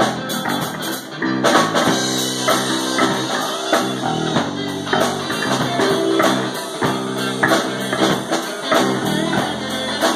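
Live rock band playing an instrumental passage with no singing: electric guitar, electric bass and drum kit. The playing grows louder and brighter about one and a half seconds in.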